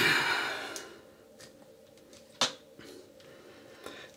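A breathy exhale fading over the first second, then a few faint clicks, one sharper about two and a half seconds in, as the cap of a freezer-chilled aftershave splash bottle is twisted while it is frozen shut.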